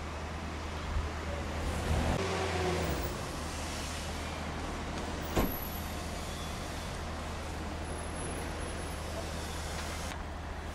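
A motor vehicle engine running with a steady low rumble, swelling a little about two seconds in, and one sharp click about five and a half seconds in.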